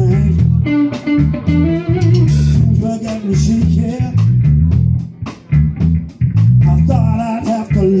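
Live band playing a funk song: electric bass guitar and electric guitar over drums.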